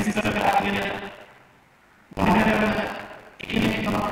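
A man's voice speaking through a public-address system in a reverberant hall, in two phrases with a pause of about a second between them.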